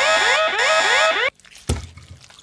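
An electronic alarm sounding: a rising whoop repeated about four times a second, cutting off suddenly a little over a second in.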